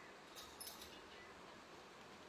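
Near silence, with a short cluster of faint high clicks and squeaks about half a second in: a wooden clothes hanger being lifted off a metal clothes rail.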